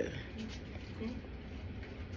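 Faint scraping and rustling of a plastic spoon scooping corn starch powder out of a plastic container.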